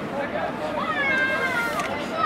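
A high, drawn-out shout from a voice on the football pitch, lasting about a second and falling in pitch, over other shouts and chatter.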